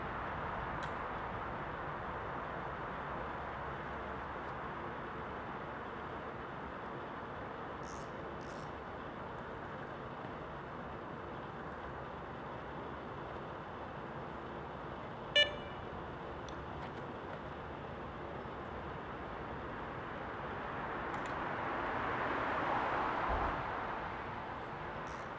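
Steady hum of motorway traffic on the bridge overhead, swelling near the end as a vehicle passes. About fifteen seconds in, a single short electronic beep from a carp-fishing bite alarm as the rod is set on the rod pod.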